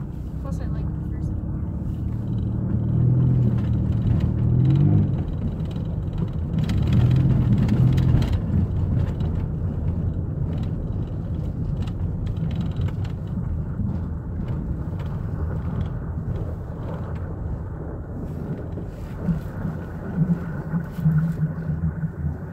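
Van engine heard from inside the cabin, rising in pitch as it accelerates over the first few seconds, easing off, picking up again about seven seconds in, then running steadily at low speed.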